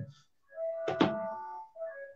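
Tabla being played solo: a few sharp strokes, the dayan ringing with its tuned tone after each, the loudest stroke about a second in.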